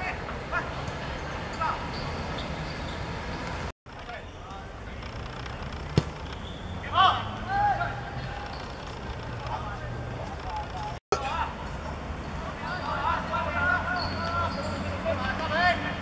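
Sound of an amateur football match on the pitch: players and spectators shouting and calling over a steady background hum, with one sharp thud of a ball being kicked about six seconds in. The sound cuts out briefly twice at edit cuts.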